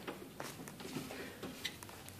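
A few faint clicks and light knocks from the plastic crisper drawers and shelves of an open refrigerator being handled, over quiet room tone.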